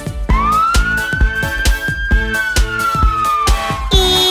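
One long police-siren wail: it rises in pitch a moment in, holds, then slowly falls. It plays over a children's song backing track with a steady drum beat.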